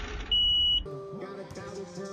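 A single loud, steady, high-pitched electronic beep, about half a second long, over a low rumble, in a break in the background music; the music comes back just before one second in.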